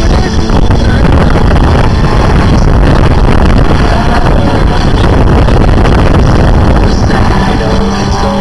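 Race car engines running at speed on a circuit, a dense steady noise heavy in the low end, mixed with pop music from the circuit's loudspeakers.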